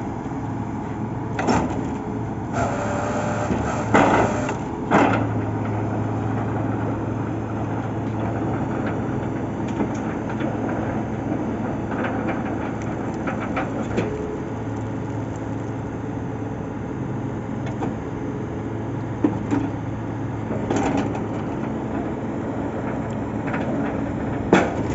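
Truck-mounted borewell drilling rig running with a steady engine hum, broken by sharp metallic clanks every few seconds.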